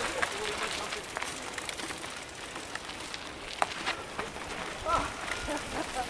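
Mountain bike rolling over a rough dirt trail: steady tyre and trail noise with scattered rattles and knocks, one sharper knock about halfway through. Faint voices of other riders come in near the end.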